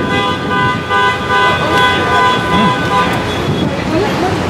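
A vehicle horn held in one long, steady blast that stops about three seconds in, over street traffic noise.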